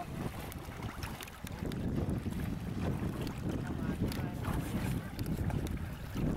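Wind buffeting the microphone at the water's edge of a rocky shore, with gentle water washing over the stones. A few faint, distant voices come through briefly.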